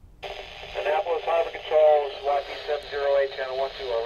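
A voice transmission received on a Uniden UM380 marine VHF radio on channel 12 and played through its speaker: thin, narrow-band speech starting a moment in. It is a caller hailing Annapolis Harbor Control on the port-operations channel.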